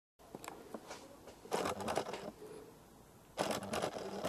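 Faint rustling and scraping of the camera being handled and moved, in two short bursts about a second and a half in and near the end.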